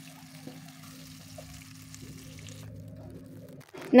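Tofu frying in a shallow pool of oil, a quiet steady sizzle over a low steady hum, cutting off shortly before the end.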